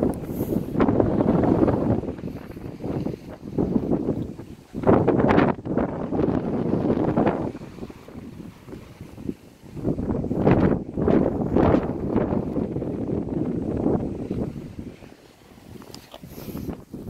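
Wind buffeting the phone's microphone in irregular gusts, a low rumbling rush that swells and drops every second or two.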